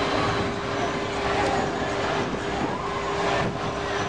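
Steady city street noise: a continuous wash of traffic with a low, even hum and faint voices from the crowd on the sidewalk.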